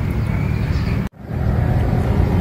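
Wind buffeting the phone's microphone outdoors: a steady low rumble, broken off abruptly for an instant about a second in before it carries on.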